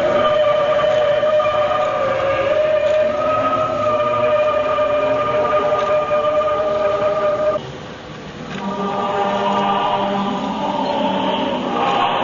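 A choir singing a slow memorial hymn, holding one long note for about seven and a half seconds, breaking off briefly, then going on with several voices on held notes.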